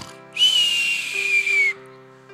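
A loud, breathy whistled exhale lasting over a second, its thin tone sliding slowly down in pitch: the whistle-out half of a playful, cartoon-style snore imitation.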